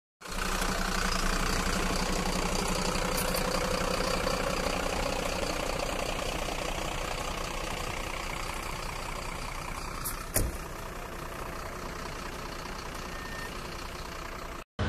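Fire truck's diesel engine idling with a steady hum that grows fainter after the first few seconds. A single sharp click comes about ten seconds in.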